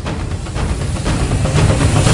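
Cinematic logo-intro sound effect: a rushing swell of noise over a deep rumble, growing steadily louder toward a peak at the end.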